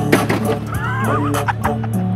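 Hip-hop music track with a steady bass line, and a short, wavering high-pitched cry about a second in.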